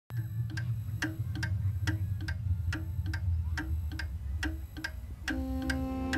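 A clock ticking evenly, a little over two ticks a second, over a low steady rumble. About five seconds in, a held chord of steady tones comes in under the ticking.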